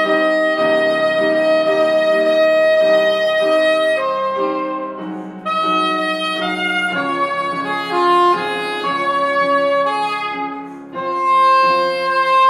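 Soprano saxophone playing a slow, lyrical melody with piano accompaniment: one long held note over repeated piano chords, then the tune moves on with two short breaks for breath.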